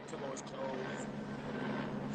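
A steady low mechanical hum with two held tones, under faint background noise, picked up by a phone microphone.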